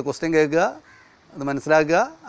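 A man speaking, in two short phrases with a brief pause about a second in.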